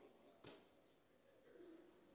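Near silence, with faint bird calls in the background.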